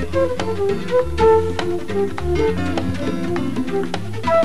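Live jazz band playing: a melody line with electric guitar over electric bass and a hand-drum rhythm.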